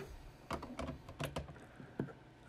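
Hard plastic PSA graded-card slabs clicking and clacking against each other and against the fingers as one slab is swapped for the next: a quick, irregular run of light clicks starting about half a second in.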